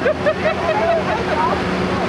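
A heavy diesel engine running at a steady pitch, with spectators' voices talking and calling over it.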